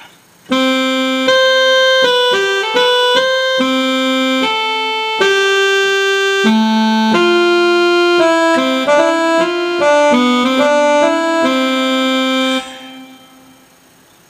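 A melody of held notes played on an electronic keyboard, each note steady and even with no piano-like decay. It starts about half a second in and breaks off near the end.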